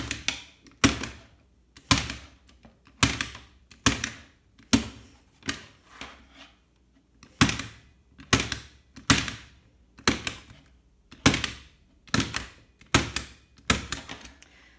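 A household stapler, opened flat, being pressed down again and again to drive staples through wet watercolour paper into gator foam board: a sharp snap roughly once a second, well over a dozen in all, at an uneven pace.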